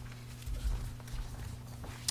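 Steady low electrical hum in the meeting hall, with a few soft low thumps and faint clicks from papers and hands on a table near the microphones, about half a second and a second in.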